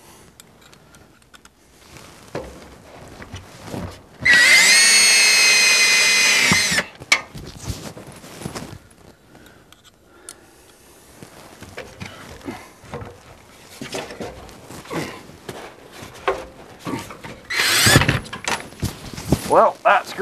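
Cordless drill running for about two and a half seconds in a steady whine, driving a screw into the vent box mounting, then a shorter run that rises in pitch near the end, with knocks and clicks of handling in between. The screw isn't going in.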